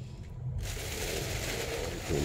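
Clear plastic bag crinkling and rustling as it is pulled open by hand, starting about half a second in.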